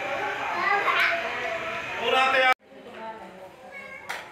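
Several voices talking over one another, indistinct chatter of a group in a room, which cuts off abruptly about two and a half seconds in and gives way to quieter, fainter background voices.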